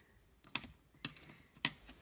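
A few light, sharp clicks and taps, spaced irregularly, the loudest near the end: drawing tools (compass and pencil) being handled and set down on paper over a hard countertop.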